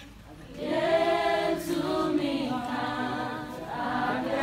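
A group of voices singing a worship song together, the singing swelling in after a brief lull at the start and holding long sung notes.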